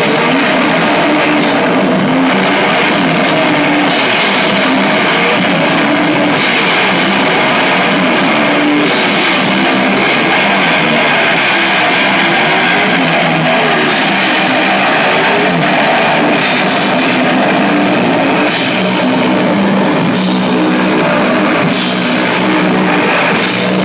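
Loud heavy rock music: distorted electric guitar over a drum kit, with a cymbal crash about every two and a half seconds.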